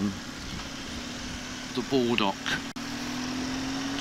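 BMW R1200GS boxer-twin engine running under way with wind and road noise, its note climbing slowly in the second half, with a brief drop-out near the middle.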